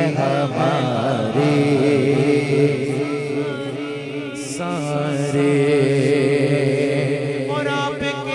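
Male voices chanting a steady, wordless drone, with a wavering, ornamented vocal line over it near the start and again near the end, as in an unaccompanied Urdu naat.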